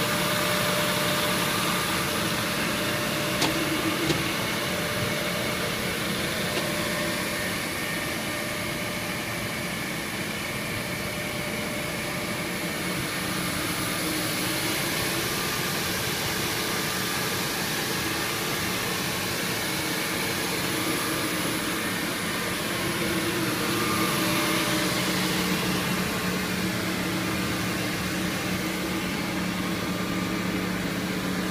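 Eldorado gun drilling machine running: its electric spindle motors and drive hum steadily with a few fixed tones, and two short clicks come about three to four seconds in.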